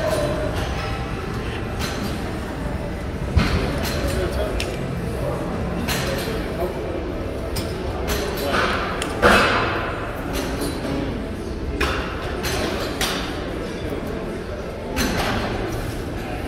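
Busy weight-room ambience: a steady wash of background voices, broken by five sharp metallic clanks of gym weights spread across the stretch.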